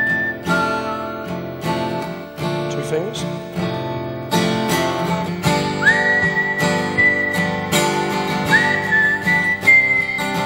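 Acoustic guitar played with chords picked and strummed, while a whistled melody slides up into long held notes over it in the second half.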